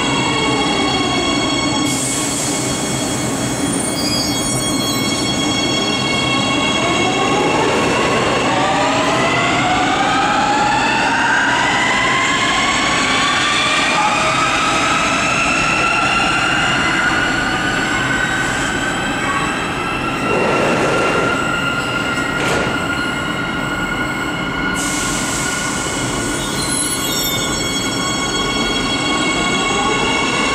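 Warsaw metro trains' electric traction motors whining in a set of stacked tones, with rail and wheel noise. The tones fall in pitch at first, then climb for many seconds as a train accelerates away. Near the end they fall again as a train brakes into the station.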